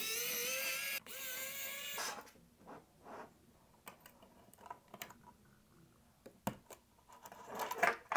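Electric precision screwdriver's motor whining steadily in two runs of about a second each, with a short break between, as it backs out a T9 Torx standoff screw. Faint scattered clicks and taps of small parts being handled follow.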